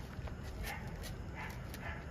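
A few faint, short calls from a distant dog over a low steady rumble.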